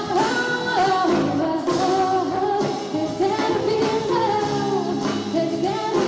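A live band playing, with a singer's voice carrying the melody over guitars and rhythm, heard from the audience in the hall.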